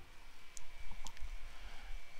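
A few faint, light clicks over faint background noise, with no speech.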